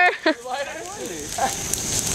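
A large bonfire of a burning couch crackling, an even rush of noise with scattered small pops, after a brief spoken question and laugh at the start.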